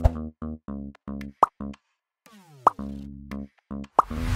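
Short electronic music jingle of clipped, staccato notes, broken by two sharp pop sound effects about a second and a half in and again a little before three seconds, with a quick falling glide just before the second pop.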